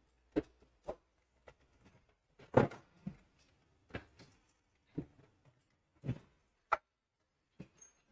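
Scattered light clicks and knocks from hands handling a road bicycle and tools, about a dozen, irregularly spaced, with the loudest about two and a half seconds in.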